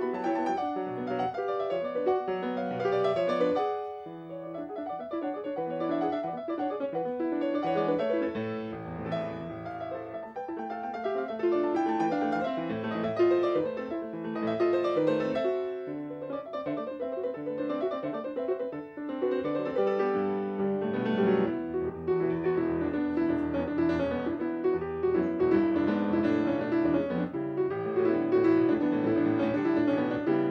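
Solo grand piano played live: quick, dense runs and chords with many rapidly changing notes, with a brief softer moment about four seconds in.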